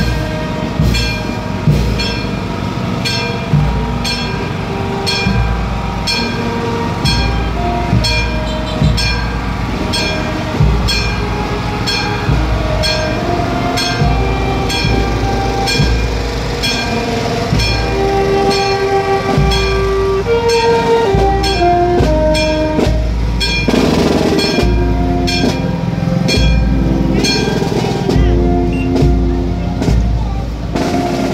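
Marching brass band playing a tune while walking: trumpets and baritone horns carry a melody over a deep bass line, with steady bass drum beats keeping time.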